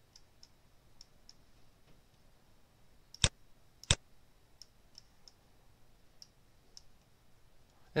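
Computer mouse clicking while editing on screen: two sharp clicks a little over three seconds in, less than a second apart, with faint light ticks scattered around them.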